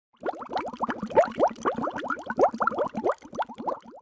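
Bubbling water sound effect: a rapid stream of bubbles, each a short rising blip, that stops abruptly at the end.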